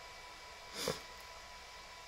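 A single short sniff of breath about a second in, over a faint steady hum.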